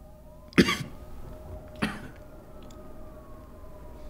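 A man coughing twice, a sharp loud cough about half a second in and a weaker one a little over a second later. A faint siren wails slowly up and down in the background.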